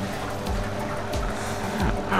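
Portable twin-tub mini washing machine running its wash and spin cycles at once, a steady motor hum with the cabinet shaking, under background music.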